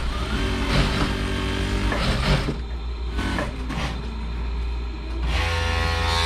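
Industrial lockstitch sewing machine stitching a sleeve hem, running in short spells over a steady low motor hum.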